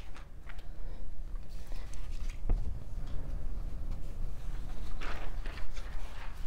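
Scattered single hand claps from a few people in a room, each clapping once, the claps falling irregularly with one clear clap about halfway through and a few more near the end, over a steady low room rumble.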